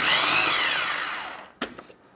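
Food processor motor running in a short pulse, crushing digestive biscuits into crumbs. Its whine rises and then falls away as it winds down after about a second and a half, followed by a light click.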